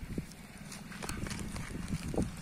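Quick, light footsteps on dry dirt ground as a boy starts to run, over a low steady rumble.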